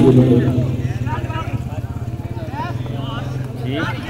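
Voices of players and onlookers calling out across a football pitch during play, over a steady low mechanical hum.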